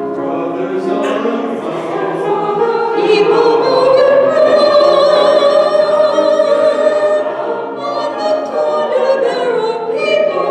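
Mixed choir of men's and women's voices singing sustained chords, swelling louder about three seconds in and easing off near the end.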